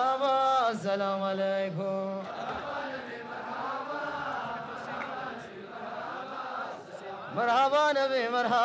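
Hadra devotional chant by men's voices: an amplified lead singer holds and bends a long note, then about two seconds in a group of men takes up the chant in a softer, blended response. The loud solo voice comes back in near the end.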